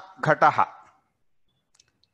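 A man's voice saying one short word, then silence broken only by a couple of faint clicks near the end.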